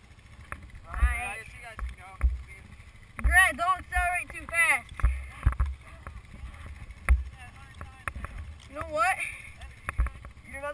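Young people's voices calling out in short bursts, a few seconds apart and too indistinct to make out, with scattered low thumps on the helmet-mounted camera's microphone.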